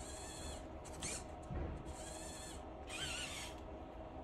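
Servo motors of an animatronic elf whining in four short high-pitched bursts, about a second apart, as the figure's arm moves.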